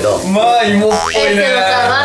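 Comic sound effect with a springy boing and a quick rising pitch glide about a second in, over a voice and background music.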